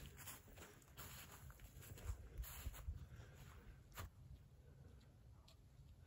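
Near silence, with a few faint rustles and a short soft tick about four seconds in.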